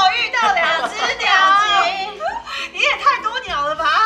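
Several high-pitched women's voices exclaiming and laughing together, in excited reaction around a table.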